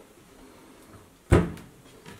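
A kitchen wall-cupboard door is swung shut, closing once with a single sharp knock a little past halfway.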